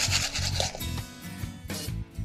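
Sprinkles rattling in a small plastic tub as it is shaken, stopping just under a second in, over background music with a steady bass beat.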